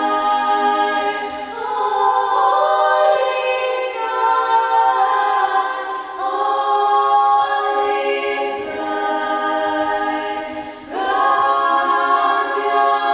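Female vocal ensemble singing a cappella in harmony, holding chords that shift every second or two; a brief breath-pause about eleven seconds in before the next phrase begins.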